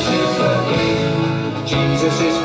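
Music: an instrumental passage of a song, with guitar.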